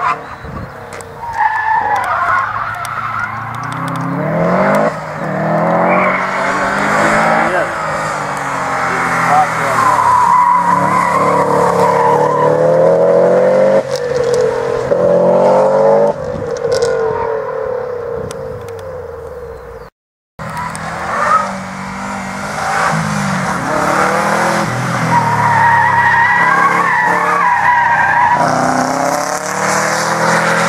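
Subaru Impreza WRX turbocharged flat-four engine revved hard and repeatedly through the gears, pitch climbing and falling again as the car accelerates and brakes between the cones, with tyres squealing at times. The sound cuts out for a moment about two-thirds through, then the hard revving continues.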